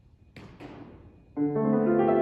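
Grand piano beginning a short solo piece: a loud chord enters about a second and a half in, its notes held and ringing. Just before it come two brief soft noises.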